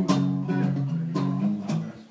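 Acoustic guitar strummed in a steady rhythm, about one strum every half second, its chords ringing between strokes and dying away near the end.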